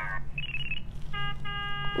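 Sound-effect previews from a robot-coding app playing through a tablet's speaker: a short, rapid ringing trill, then about a second of steady electronic tone with a brief break in it.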